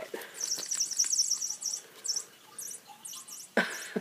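Electronic mouse-squeak sound module in a battery-powered light-up cat toy, switched on by pulling its tab. A quick run of high, chirpy squeaks lasts about a second and a half, then comes a few separate squeaks. A laugh breaks in near the end.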